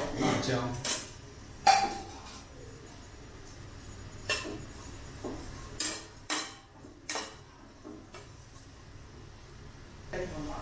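A metal spoon clinking and scraping against a nonstick wok while green chillies are stir-fried. There is a louder clatter in the first second, then single sharp clinks every second or so.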